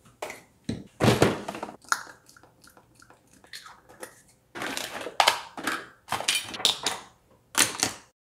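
Small plastic toiletry bottles and a clear plastic storage box being handled and set down on a countertop: irregular plastic knocks and clatters mixed with rustling.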